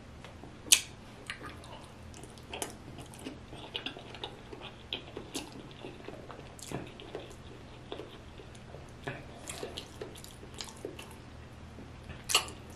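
Close-up chewing of a mouthful of sauce-coated potato from a seafood boil: soft, wet mouth clicks and squishes at an irregular pace, with one sharper click about a second in.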